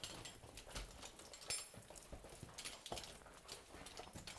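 Faint, irregular footsteps: boots scuffing and knocking on rock, with small clicks of gear, as people walk along a narrow mine passage.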